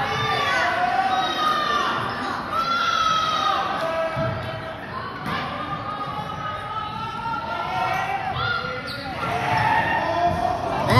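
Sounds of live basketball play on a hardwood gym court: the ball bouncing and players' shoes on the floor, mixed with voices calling out from players and the sideline.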